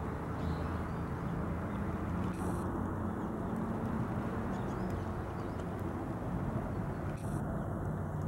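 Steady low rumble of distant motor traffic, with a faint even hum.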